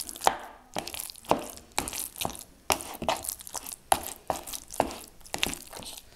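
A metal spoon stirring a wet cottage-cheese mixture in a plastic bowl, beating it to a smooth mass: short clicks and scrapes against the bowl about twice a second, with soft squelching in between.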